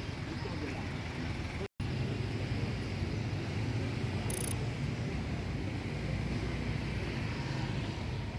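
Street traffic noise: the steady low hum of motorbike and car engines with faint background voices, broken by a brief gap just under two seconds in. A short high-pitched tone sounds about halfway through.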